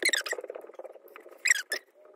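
Fingertips rubbing moisturizer cream into facial skin close to the microphone: a rough rubbing noise, with short squeaks at the start and again about one and a half seconds in.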